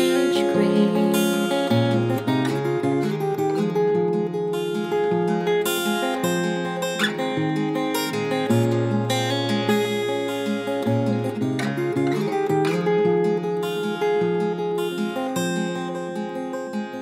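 Instrumental passage of a folk-pop song: acoustic guitar playing, with the low notes changing every second or two, and no singing.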